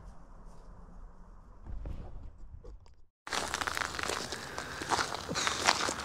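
Quiet outdoor background for about three seconds, then a sudden cut to close, crackling rustle and crunching right at the microphone, like clothing and gear moving against a handheld camera.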